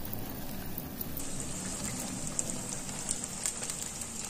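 Momo dumplings shallow-frying in hot oil in a wok: a steady sizzle full of small crackling pops that turns hissier about a second in.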